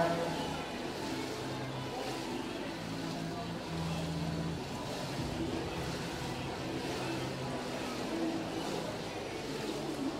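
Indoor swimming pool hall ambience: lapping pool water and a murmur of distant voices, with faint music of held low notes underneath.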